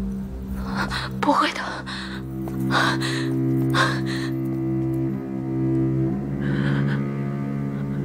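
Slow dramatic score of low sustained bowed strings, cello and double bass, holding long notes, with a few short breathy sounds over it.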